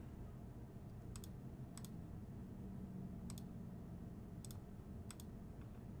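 Computer mouse clicking about five times, quiet single clicks spaced unevenly across a few seconds, over a faint low room hum.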